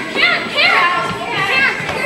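Excited shouting from a gym crowd and young players: several high-pitched voices yelling over one another.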